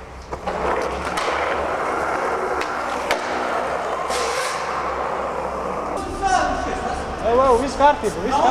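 Skateboard wheels rolling steadily over smooth concrete in a parking garage, with a few sharp clicks in the first half. Near the end a person's voice calls out a few times.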